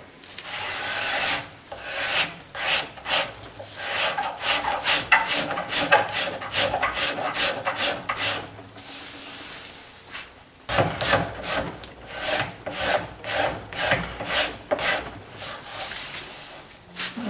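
Hand scraper scraping a beech table leg in quick repeated strokes, several a second, with a short pause about two-thirds through. The strokes are smoothing out tear-out and tool marks left by the spokeshave and plane, ahead of sanding.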